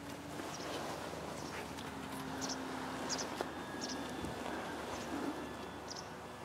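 Quiet outdoor ambience: a steady hiss with short high chirps recurring every second or so, and a faint steady hum underneath.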